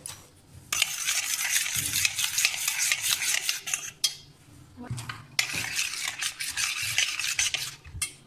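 A metal spoon stirring and scraping a thick spiced marinade around a stainless steel bowl, fast and continuous. It comes in two bouts, with a short pause and a click about halfway through.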